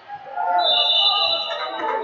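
Voices calling out in a large hall during a wrestling bout, with a high, steady tone lasting about a second near the middle.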